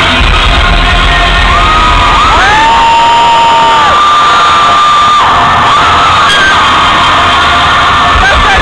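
Concert crowd screaming and cheering over loud live music, with long high-pitched screams that rise and fall from people close by.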